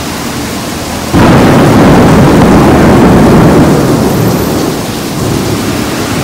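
Thunder over steady rain: a loud crack of thunder about a second in, rumbling on for several seconds and slowly fading.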